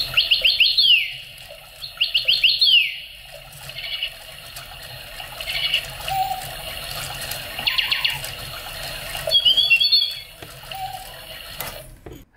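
Electronic chirping-bird toy playing its recorded birdsong: bursts of rapid chirps and warbling trills every couple of seconds, over a steady low hum from the motor that moves the bird. The sound cuts off just before the end as its stop button is pressed.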